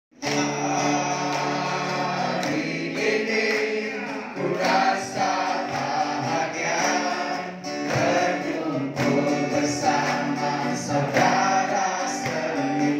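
A Malay-language Christian worship song, with a group of people singing together over musical accompaniment.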